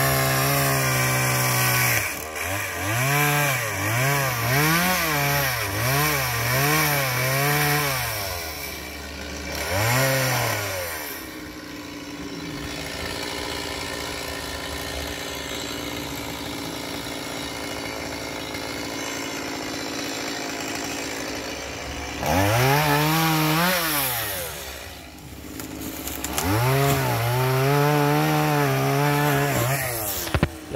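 Chainsaw revving up and down repeatedly, about one rev a second, then dropping to a steady idle for about ten seconds, then revving again and held at high speed near the end.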